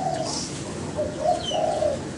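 A dove cooing in two low calls, the second starting about a second in, with a small bird's faint, brief high chirps.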